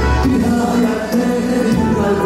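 Black Sea Turkish folk music played on string instruments: a quick melodic line of changing notes over a steady accompaniment.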